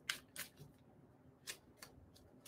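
Tarot cards being shuffled by hand: a few faint, crisp card snaps with short pauses between.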